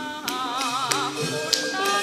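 Javanese gamelan music accompanying a wayang orang stage show: held pitched tones under a wavering melody line with strong vibrato. Sharp percussive taps cut through about every half second.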